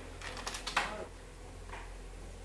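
Wooden carrom men clicking against each other and the board in a quick run of sharp clicks as the pieces are gathered and set up. The loudest click comes just under a second in.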